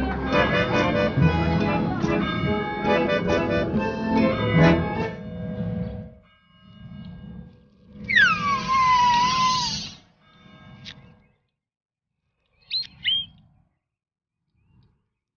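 Cartoon background music for about the first five seconds, then fading away. About eight seconds in, a cartoon chick gives one loud squawk that falls in pitch and lasts about two seconds, and near the end come two short high chirps.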